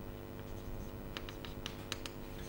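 Chalk writing on a blackboard: a few short scratches and taps of the chalk in the second half, over a faint steady hum.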